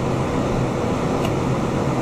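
Steady low hum of room ventilation, with one faint tick a little past halfway.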